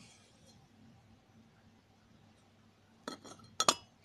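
Drilled steel baffle plates for a homemade muffler clinking against each other as they are handled: quiet at first, then a few light metallic clinks about three seconds in, the loudest one ringing briefly.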